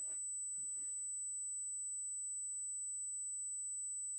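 A steady high-pitched electronic tone with a faint low hum beneath it. It is interference in the stream's audio, which the hosts call static and put down to a connected speaker.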